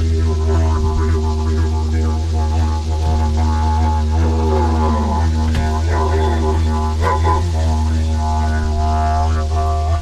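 A didgeridoo played in a steady low drone, with overtones shifting and gliding above it.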